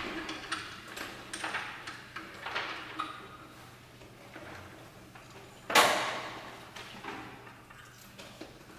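Sparse, quiet extended-technique sounds from a prepared grand piano played inside on its strings, with the cello: short scrapes and swishes, and one louder sudden sound about six seconds in that rings away over a second.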